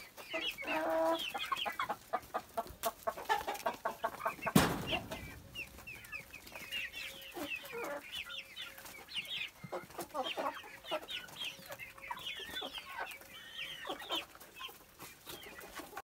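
A flock of four-month-old hens with young roosters clucking, in many short, high calls throughout. A run of rapid clicks between about two and four seconds in, and a single loud thump about four and a half seconds in.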